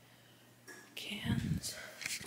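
A woman whispering a few words, with a low rumble of the phone being handled in the middle of it.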